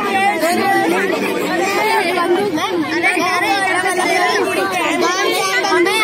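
Several children's voices talking over one another close to a microphone: high-pitched, continuous chatter.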